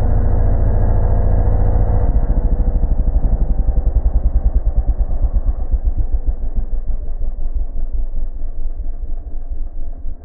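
MRF 140 RC Big pitbike's single-cylinder engine idling, its sound slowed down for slow motion. From about two seconds in, the firing pulses spread further and further apart into a deep, slowing throb.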